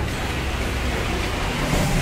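Steady low rumble and hiss of city street traffic noise, with no single distinct event standing out.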